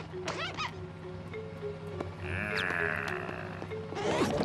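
Cartoon background music over a steady low hum, with a wavering, warbling sound lasting about a second and a half in the second half as the cartoon gorilla turns green and airsick.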